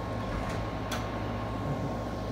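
A steady low mechanical hum with a faint thin whine above it, and two short sharp clicks about half a second apart near the middle, from the phone being handled.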